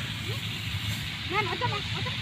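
Tractor engine running steadily in the background as a low, evenly pulsing drone, with a child's short vocal sounds about one and a half seconds in.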